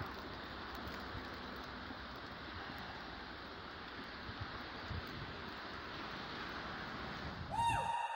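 Faint, steady outdoor background hiss with a few small ticks. Just before the end a short tone rises and holds.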